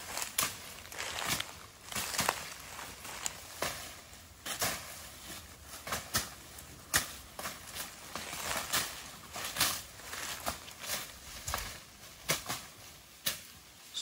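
Irregular crunches and sharp snaps of dry weeds and brush being cut and pulled during hand clearing of overgrown land, a few cracks a second.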